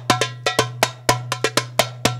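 Live darbuka (metal goblet drum) played by hand: a fast, uneven run of sharp, ringing strokes, about six a second, over a steady low hum.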